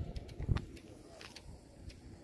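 Outdoor ambience with an uneven low rumble of wind on the microphone, and a single thump about half a second in.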